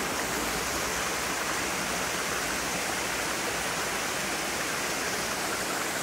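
Steady rush of a mountain waterfall and its stream pouring over boulders.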